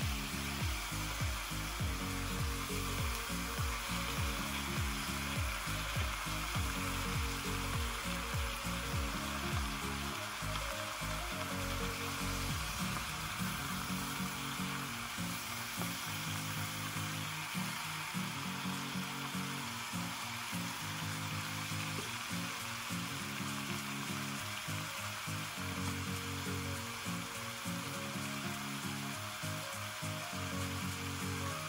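Chicken pieces sizzling steadily as they brown in hot oil in a frying pan.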